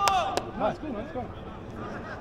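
Men's voices calling out across an outdoor football pitch, with two sharp knocks in the first half-second.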